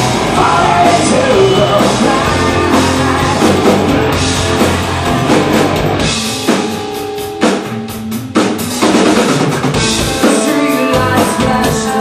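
Live rock band playing: electric guitars, bass and a drum kit. About six seconds in the low end drops away to a sparser stretch of single drum hits, and the full band comes back in about two seconds later.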